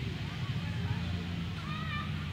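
Distant voices of people in an open square over a steady low rumble. Near the end comes a short high-pitched wavering call.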